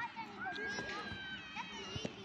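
Faint children's voices calling and shouting, with no close talker.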